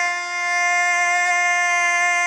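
Intro music: a wind instrument holds one long steady note.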